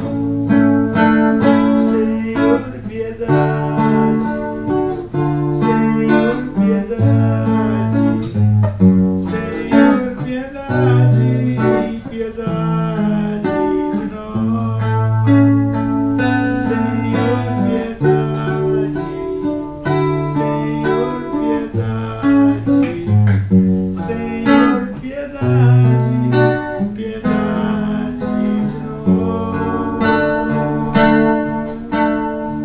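Nylon-string classical guitar strummed and picked in a toada rhythm, accompanying a man's singing.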